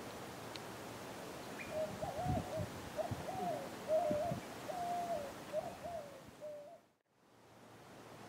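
A bird calling a run of about nine short, low, steady-pitched notes, with a few low thumps among them; the sound fades out near the end.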